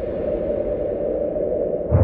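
Electronic outro sound effect: a steady, low whooshing rumble, with a deep boom right at the end.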